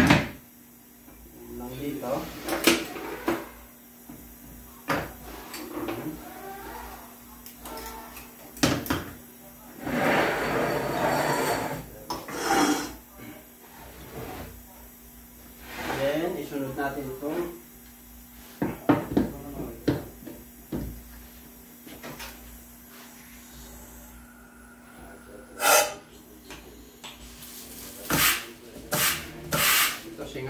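Steel automatic-transmission parts (clutch drums and gear sets) set down and shifted on a workbench, giving scattered metal clunks and scrapes. Near the end come short hisses of compressed air from a blow gun pressed to the clutch housing to air-check the clutch.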